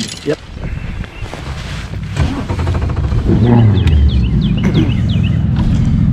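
Bass boat's outboard engine running at low speed, a steady low rumble that comes in about two seconds in and keeps going.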